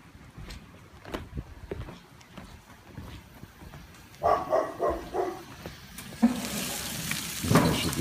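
A dog barks a few times about four seconds in. Then, with the gas grill opened, food starts sizzling on the grates: a steady hiss that sets in about six seconds in and keeps on.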